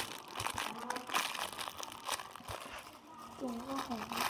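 Plastic wrapping crinkling in bursts as a small toy is handled close to the microphone.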